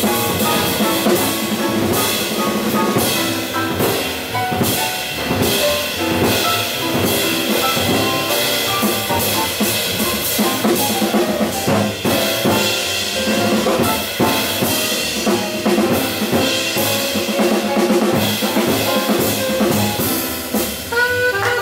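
Live jazz: a Yamaha grand piano played in a busy run of notes over a drum kit keeping time with snare and cymbals.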